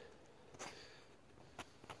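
Near silence: room tone, with a short soft sniff about half a second in and two faint clicks near the end.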